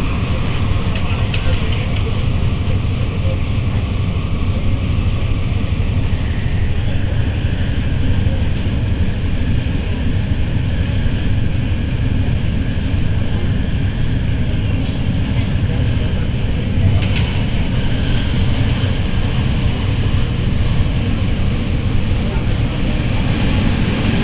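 Steady running noise inside a moving MTR train car: a continuous low rumble of wheels on rail, with rushing noise over it.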